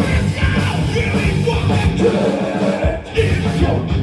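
Live rock band playing loud: distorted electric guitar, bass and drums with yelled vocals. The band drops out briefly about three seconds in and comes straight back in.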